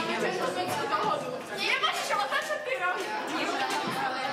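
Young players chattering over one another in a room, with a few sharp clicks of wooden chess pieces being set down on the boards.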